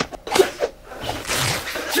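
Sounds of a staged fistfight: a sudden sharp hit near the start, then a longer rushing noise of movement.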